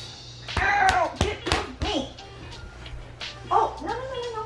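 Voices crying out in short, pitch-bending yelps during play-wrestling, with a few bumps of bodies on the carpeted floor, over background music.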